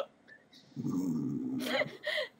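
A person's drawn-out low vocal sound, about a second long, starting after a short silence, with talk beginning near the end.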